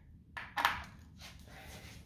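Two light clicks of tools or parts being handled, about a third and two-thirds of a second in, then faint handling noise.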